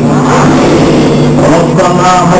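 Men's voices chanting a prayer, led over a microphone and loudspeaker, with crowd noise and a steady low hum underneath. The chant grows clearer near the end.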